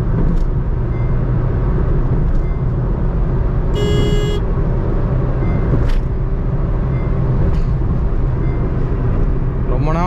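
In-cabin drone of a Honda City's 1.5-litre i-VTEC four-cylinder petrol engine and tyres at steady highway cruising speed, a low rumble. A vehicle horn sounds briefly about four seconds in.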